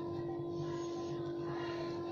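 A steady hum held on one pitch, with a faint soft hiss about half a second in.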